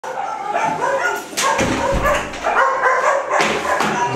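Dog vocalising in a continuous run of high-pitched yips and whines.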